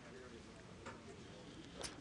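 Faint clicking of poker chips being handled at the table as a raise is made.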